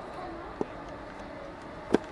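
British Rail Class 387 electric train pulling away from the station, a faint steady rumble, with faint voices. Two sharp knocks cut through it, one about half a second in and a louder one near the end.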